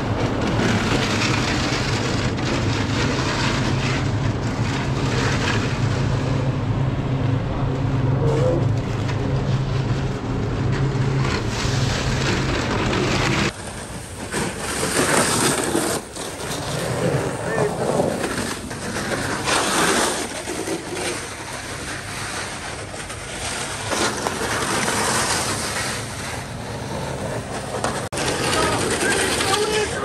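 Skick electric snow scooter running over snow, with a steady hum through the first half that stops abruptly partway through. After that the sound shifts from moment to moment, with indistinct voices in the background.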